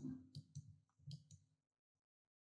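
About six faint clicks from computer controls over the first second and a half, as moves are stepped through on an on-screen chessboard.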